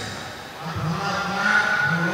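Speech only: a man speaking into a microphone, with a short pause about half a second in.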